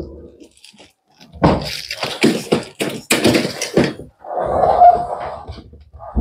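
Aluminium trolley case being handled: a quick run of metallic knocks and rattles as its telescopic handle is pushed down, then a longer rough scrape as the case is shifted and tilted on a tile floor.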